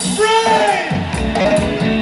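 A live reggae band playing over a steady bass and drum groove. A voice sings long, drawn-out notes that bend downward, a new phrase starting about a second and a half in.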